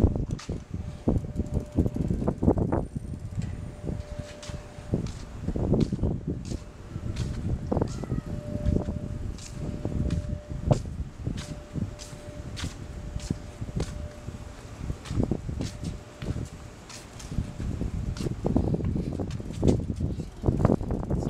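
A child's small bicycle rolling over tiled paving, with a continuous uneven rumble of wind on the microphone and many scattered clicks and knocks. A faint steady whine comes and goes.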